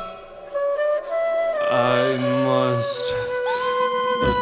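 Music: a flute playing long held notes that slide from one pitch to the next, in a sparse passage of an experimental metal track, with a low note held briefly underneath in the middle.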